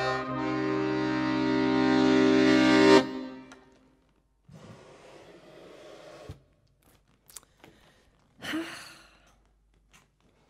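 Small red Weltmeister piano accordion holding a final sustained chord that swells and is cut off sharply about three seconds in. After that come faint air noise, a few small clicks and a short breathy sound as the bellows are closed.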